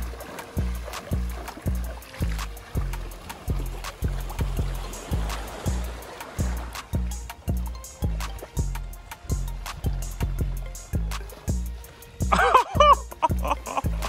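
Background music with a steady bass-heavy beat of about two beats a second; a voice comes in near the end.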